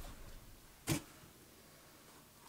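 Quiet room tone with a single short, sharp click about a second in.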